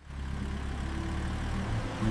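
A car engine running with a steady low hum, fading in quickly at the start.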